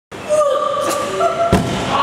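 A person thrown down onto a tatami mat: one dull thud about one and a half seconds in.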